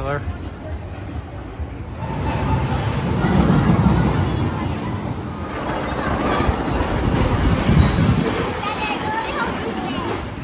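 Steel roller coaster train running along its track, a rumble that swells twice, with people chattering in the background.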